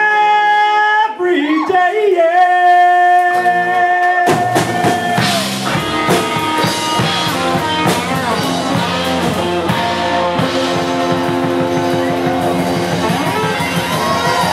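Live rock band playing: long held sung notes over a sparse backing, then about four seconds in the drums, bass and guitars come in together and the full band plays on.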